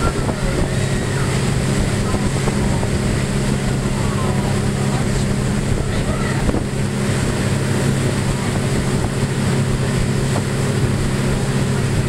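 Tour boat's engine running underway with a steady drone, over the rush of its churning wake and wind buffeting the microphone.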